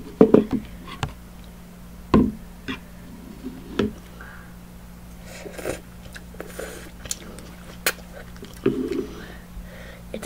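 Close-miked eating of instant noodles: slurps of noodles and mouth sounds, broken up by scattered sharp clicks and knocks of a fork against the bowl, over a steady low hum.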